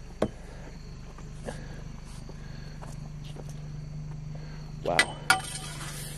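A vehicle engine idling as a steady low hum, with one sharp click just after the start and a short burst of hiss near the end.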